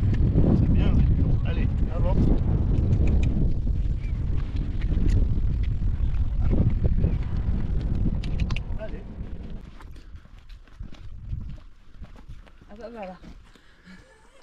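Wind buffeting the microphone outdoors, strong for the first ten seconds or so and then dying down. Faint voices come through at times.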